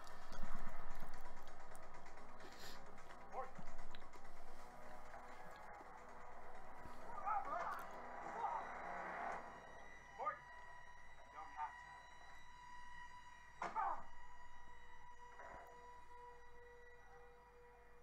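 A television drama's soundtrack playing at low level: held notes of background score, with snatches of dialogue and a few short sound effects.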